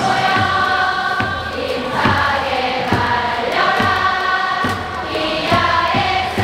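A huge stadium crowd of baseball fans singing a player's cheer song together in unison, with a steady beat about once a second.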